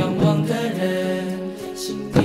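Mixed-voice school choir singing a cappella in harmony on a held chord. A sharp slap from book percussion falls at the very start, and a brief hiss comes near the end.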